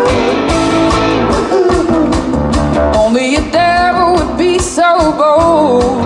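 Live band playing: a woman singing lead, holding notes with vibrato in the second half, over hollow-body electric guitar, upright bass and a drum kit.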